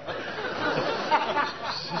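Studio audience laughing: many voices at once, laughing at a comedy punchline.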